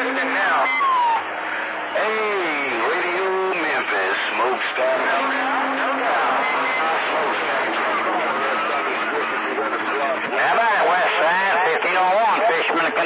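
CB radio receiving skip on channel 28: distant stations' voices come through the speaker hard to make out, under noise, with a low steady tone that comes and goes.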